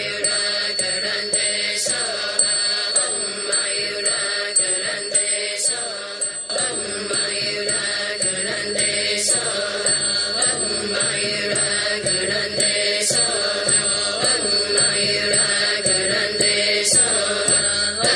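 Buddhist mantra chanted to a musical accompaniment, continuous and even, with light percussive strikes every second or so.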